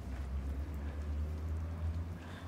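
A steady low drone with a faint hiss above it.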